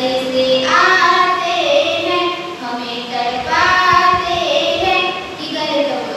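A young woman singing solo into a microphone, in long held notes that glide in pitch, with short breaks between phrases.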